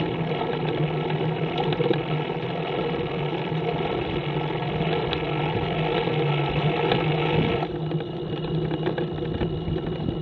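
Motor trike engine running steadily while riding along a road, with road and wind noise on the microphone. About three-quarters of the way through, the higher-pitched part of the noise drops off sharply.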